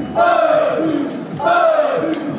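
Crowd of idol fans shouting calls in unison: two loud shouts in two seconds, each falling in pitch.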